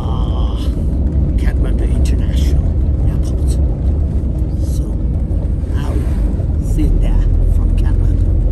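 Moving bus heard from inside the cabin: a steady low rumble of engine and road noise, with people talking over it.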